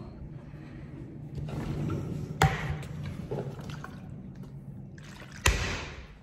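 Rustling movement and handling noise, with two sharp knocks: one about two and a half seconds in and a louder one near the end.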